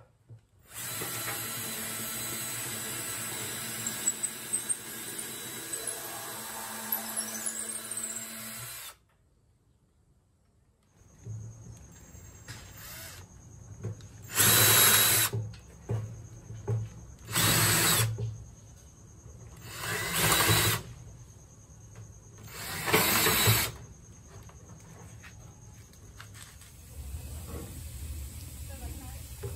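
Cordless drill with a twist bit boring holes through redwood 2x4s: one long steady run of about eight seconds, then after a short pause four separate short runs, roughly three seconds apart.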